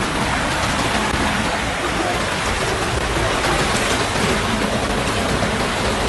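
Steady, even rush of water from a flash-flood torrent running through a street.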